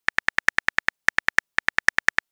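Simulated phone-keyboard tap sounds from a chat-story app: identical sharp clicks about ten a second as message text is typed and erased, with two brief pauses in the middle.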